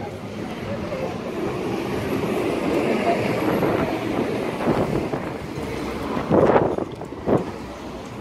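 City street traffic noise, a vehicle passing close by, its sound swelling and then fading over several seconds, with voices of people around. Two sharp knocks near the end.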